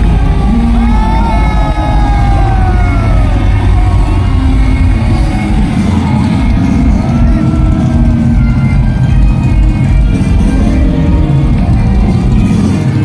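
Loud live rock music from a band on stage, recorded from within the audience, with crowd voices calling and cheering over it.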